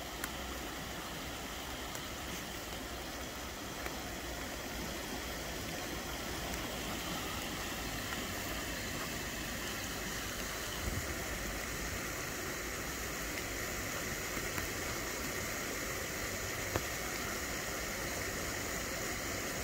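A shallow burn running steadily: a constant rush of flowing water.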